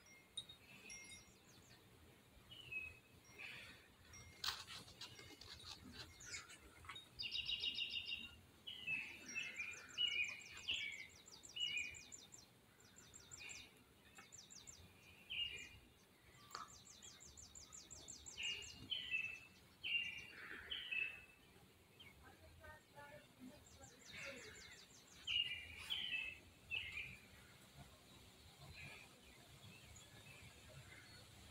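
Faint bird chirps in short clusters, with quick, high ticking trills between them, and a single click about four and a half seconds in.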